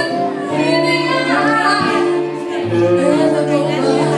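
A woman singing a slow blues ballad live, with acoustic and electric guitar accompaniment.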